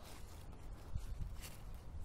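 Quiet outdoor background with a steady low rumble and no distinct events.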